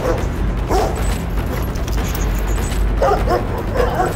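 An aggressive Rottweiler barking in short bursts: a bark at the start, one about a second in, and three in quick succession near the end.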